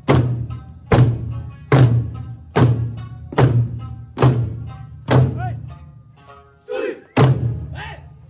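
Eisa drum troupe striking large barrel drums (ōdaiko) together in a steady beat, one heavy strike a little under once a second. Near the end the beat breaks off for about two seconds while voices shout, then one more strike lands.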